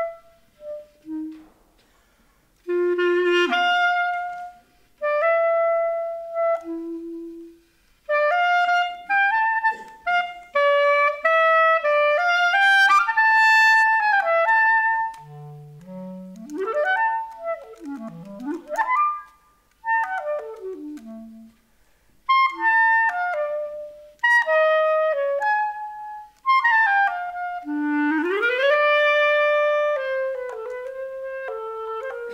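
Solo clarinet played unaccompanied: short melodic phrases broken by brief pauses, with fast runs sweeping down into the low register and back up in the middle, and a smooth glide up into a held note near the end.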